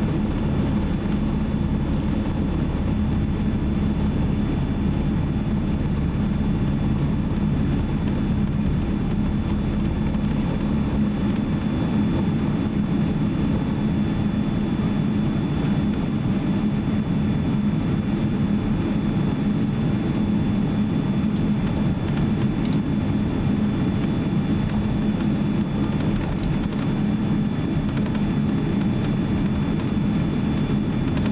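Cabin noise of a Boeing 777-200 taxiing on the ground with its jet engines at idle: a steady low hum and rumble with a faint, thin high whine over it.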